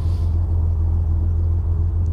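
Vehicle engine idling steadily, a low, even rumble.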